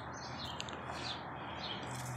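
A small songbird chirping faintly in a steady run of short, down-slurred notes, about three a second, over a light outdoor hiss. A small click about half a second in.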